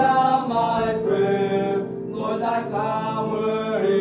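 Three boys' voices singing a hymn together in harmony, holding long, sustained notes.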